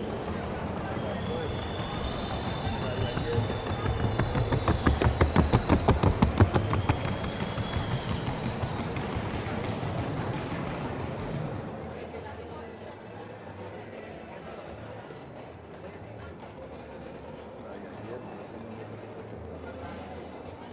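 Rapid, even hoofbeats of a Colombian trocha mare working in the trocha gait. They are loudest about five to seven seconds in, then fade out after about twelve seconds into a low background murmur.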